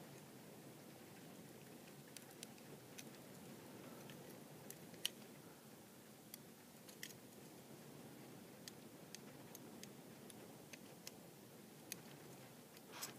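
Faint scraping of a snap-off craft knife blade paring the gel and LED chips off a glass LED substrate, with small scattered crunchy clicks as the layers break away, the sharpest about five seconds in.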